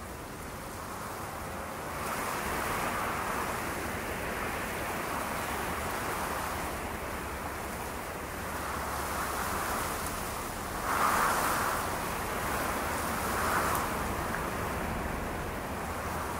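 A rushing noise that swells and fades every few seconds, with its strongest surge about eleven seconds in.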